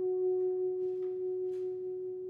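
Tenor saxophone holding one long, soft, pure note that slowly fades away, with a couple of faint rustles under it.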